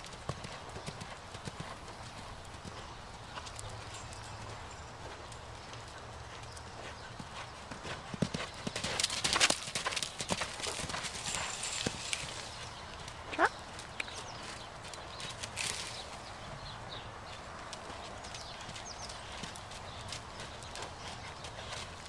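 Hoofbeats of an unshod Thoroughbred mare cantering loose on sand footing: a run of soft, irregular strikes, louder for a couple of seconds about nine seconds in.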